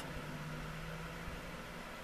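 Steady background hiss with a faint low hum: room tone, with no distinct event.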